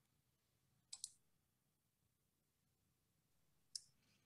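Near silence broken by faint, short clicks: a quick double click about a second in and a single click near the end.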